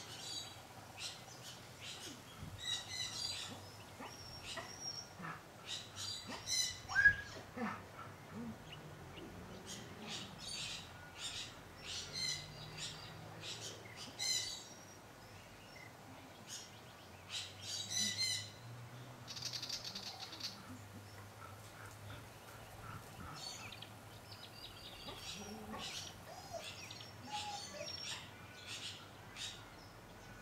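Small birds chirping and calling, short high calls repeating throughout, over a faint low background hum.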